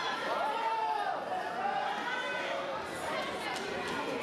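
Chatter of many overlapping voices in a large sports hall, with people calling out over it during the first second.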